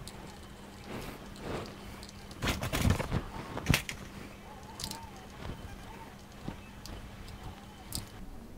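Small clicks, scrapes and knocks of a multitool working a screw out of the battery cover of a cheap plastic RC-car transmitter, with the loudest knocks about two and a half to four seconds in.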